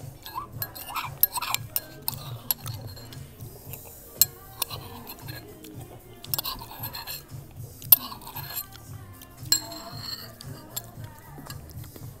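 Cutlery clinking against ceramic dishes in a series of sharp, irregular clinks, the loudest about eight seconds in, over quiet background music.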